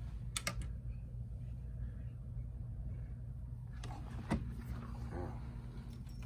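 A few light clicks and knocks as a tennis racket is handled and set on a swing-weight machine, a pair about half a second in and another about four seconds in, over a steady low hum.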